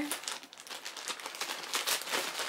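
Clear plastic bag crinkling in irregular crackles as hands pull it open.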